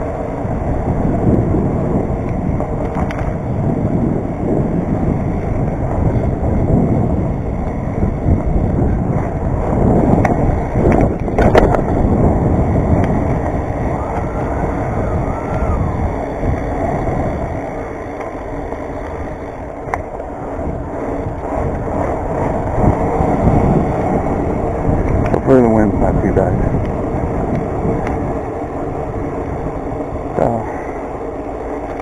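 BMX bike rolling over concrete sidewalk and path, a continuous tyre and road rumble with wind on the handlebar camera's microphone. A few brief squeaks rise and fall about ten seconds in and again near the end.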